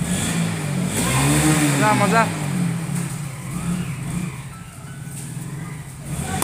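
A motor vehicle engine running, rising and then falling in pitch about a second in, with a voice shouting over it.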